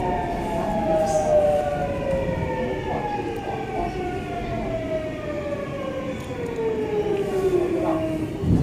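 Subway train's traction-motor inverter whine, several tones sliding steadily down in pitch together as the train slows to a stop, over the rumble of the running car. The glide ends near the end, followed by a low thud.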